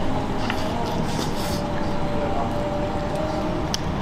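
Steady background din of a restaurant dining room, with faint voices and a low rumble.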